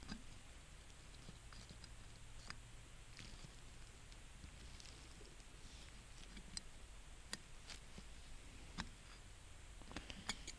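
Faint, scattered clicks and light scrapes of a pick tip working against a stuck valve end plug inside the bore of a 2002 Honda Odyssey automatic-transmission valve body, trying to lever the plug out.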